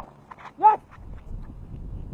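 A single sharp crack of a cricket bat striking the ball, followed by low wind rumble on the microphone.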